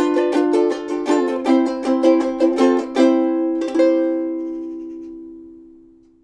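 Ukulele playing the end of a theme tune: a run of quick picked notes, then a final chord about three seconds in with one more strum, left to ring and fade away.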